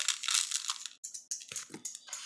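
A clear plastic bag crinkling and dry rice grains rustling inside it as a spoon scoops into the bag, a run of short irregular crackles with a brief pause about a second in.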